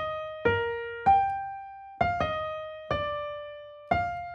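A simple melody played one note at a time on a piano-toned keyboard, each note struck and left to fade, about six notes with a short gap in the middle. It is the earlier C major melody transposed up a minor third into E flat major.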